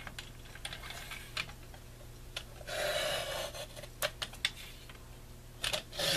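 Fiskars sliding paper trimmer cutting a strip off a sheet of paper: the blade carriage runs along the rail in one stroke about three seconds in. Sharp clicks and taps come from the trimmer and the paper being positioned before and after the cut.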